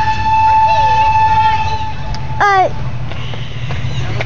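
A train whistle blowing one long steady note that cuts off about two seconds in, over a low rumble.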